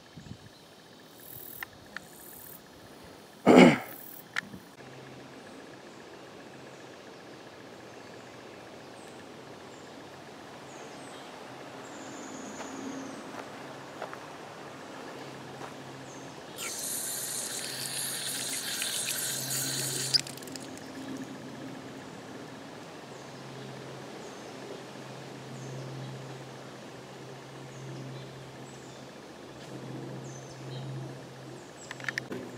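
Water gushing from a pipe into a galvanized metal bucket for about three seconds, over a faint steady background of insects. A sharp loud thump a few seconds in is the loudest sound.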